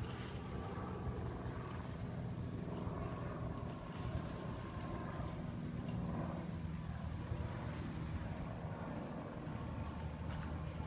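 A steady, low engine drone with an even hum, unchanging in pitch and level.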